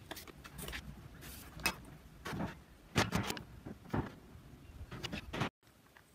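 Footsteps of a man walking away across concrete, about one and a half steps a second, some landing harder than others, ending abruptly near the end.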